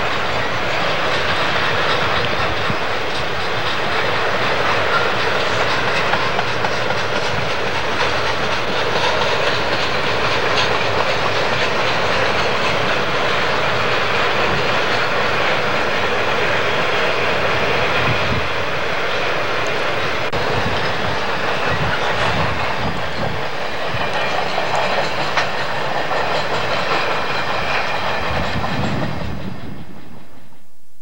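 Double-stack container freight train rolling past, its steel wheels running steadily on the rails.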